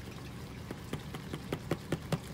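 A Wilson A2000 X2 leather baseball glove being flexed open and shut by hand: a run of small, irregular creaks and taps of the leather, over a faint steady trickle of aquarium water.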